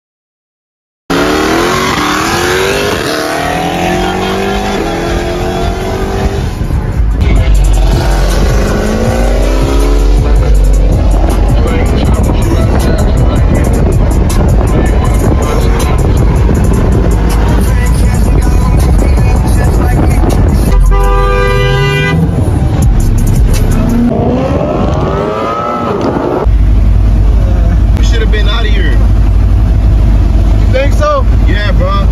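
After about a second of silence, a car engine accelerates hard, its pitch climbing again and again as it runs up through the gears. Loud road and engine noise follows, then another rising rev that cuts off, then a heavy low rumble.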